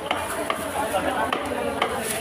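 A large knife chopping black carp on a wooden chopping block: about four sharp knocks of the blade striking the block, spread over two seconds.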